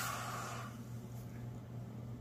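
Freshly poured .999 gold bar, gripped in pliers, hissing as it is quenched in a glass dish of water; the sizzle is strongest as it goes in and fades away within about a second.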